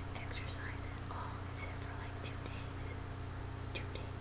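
A woman whispering faintly, with soft breaths and a few small mouth clicks, over a steady low hum.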